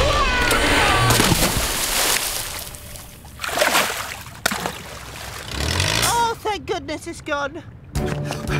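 Cartoon water splashing and sloshing over the first couple of seconds, then scattered knocks. Near the end comes a wavering, wordless vocal sound.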